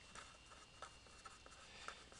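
Faint scratching and small ticks of a marker writing on paper, heard over near-silent room tone.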